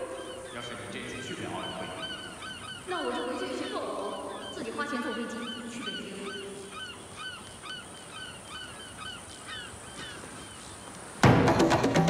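A flock of birds giving short honking calls, repeated a few times a second, with a voice speaking briefly over them. About eleven seconds in, loud percussive music with wood-block knocks starts suddenly.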